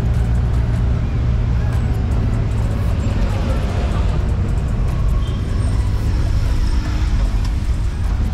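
Riding inside a moving multicab, a small Philippine passenger utility vehicle: a steady low engine drone with road noise.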